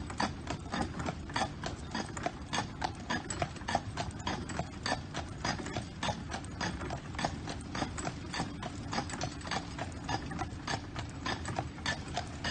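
Shod hooves of a white horse clip-clopping on a paved road at a walk, an even rhythm of about four hoofbeats a second, over a steady low rumble.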